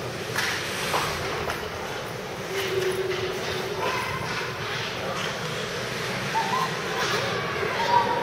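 Ice hockey game sounds in an indoor rink: skates scraping the ice, a few sharp clicks of sticks and puck, and faint distant shouting voices over a steady background noise.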